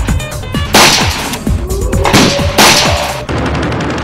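Rapid rifle gunfire, a film's dubbed gunshot effects: many quick shots, with the loudest blasts about a second in and twice just after two seconds in. Background music plays underneath.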